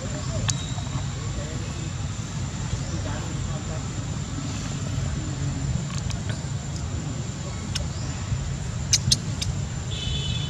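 Outdoor background noise: a steady low rumble under a constant high-pitched whine, with a few sharp clicks, the loudest two close together about nine seconds in.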